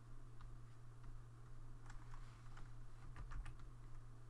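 Faint clicking of computer input devices at a desk: a few scattered clicks, then a quick run of about five about three seconds in, over a low steady hum.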